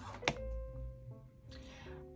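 Quiet background music with soft plucked guitar notes, and a single short click a fraction of a second in.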